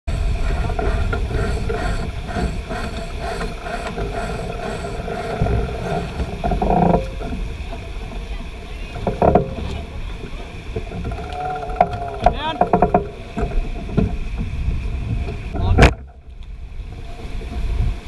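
Water rushing along the hull of a Young 88 keelboat sailing hard and heeled, mixed with wind buffeting the camera microphone. A single sharp knock comes near the end, after which the noise dips briefly.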